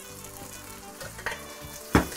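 Sliced fennel and mangetout sizzling in hot sunflower oil in a wok, just tipped in to start a stir-fry. A metal spoon clacks sharply against the pan near the end.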